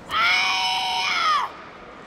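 A karate kiai: a teenage girl's loud shout during a kata, one long cry held for over a second that drops in pitch as it ends.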